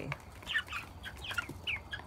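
A flock of young chickens, about ten weeks old, peeping and chirping: short high calls, often gliding downward, about four or five a second.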